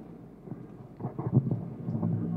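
Handling rumble from a handheld microphone as it is passed from one person to another, over low hall noise with faint scattered sounds in the middle.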